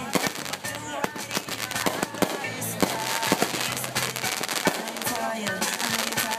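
Aerial fireworks bursting in rapid succession: a dense, irregular run of sharp bangs and crackles, several a second, with music playing underneath.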